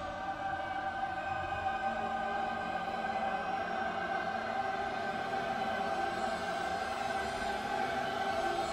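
Dramatic film score: a choir holding long, steady chords over the orchestral music.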